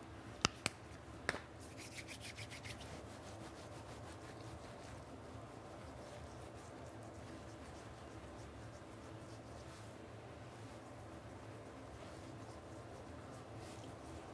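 Plastic toiletry bottles and caps handled on a bathroom counter: three sharp clicks in the first second and a half, then a quick run of faint ticks. After that only a steady low room hum.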